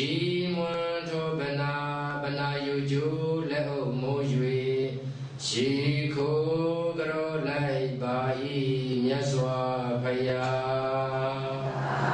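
Buddhist monk chanting in a slow, drawn-out male voice, holding each note long, with a break for breath about five and a half seconds in.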